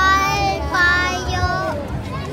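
Young children's high-pitched voices calling out excitedly in three long, drawn-out shouts, over the low hubbub of a crowd.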